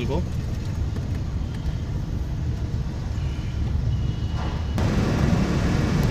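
Car cabin noise while driving: a steady low rumble of engine and road, with an abrupt change in the sound about five seconds in.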